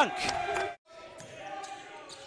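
Basketball being bounced on a hardwood court in a gym with no crowd, with a faint steady hum beneath. A commentator's voice trails off in the first moment, then cuts out.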